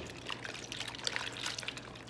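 A hand sloshing and squishing rye sourdough pre-ferment through warm water in a stainless steel mixing bowl: faint, irregular wet squelches.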